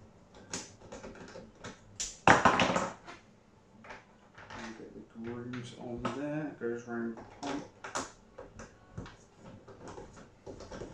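Clicks and knocks of plastic handle parts and cable clips being handled during assembly of an electric artificial-grass vacuum. About two seconds in there is a louder rustling scrape lasting under a second. Indistinct speech is heard in the background.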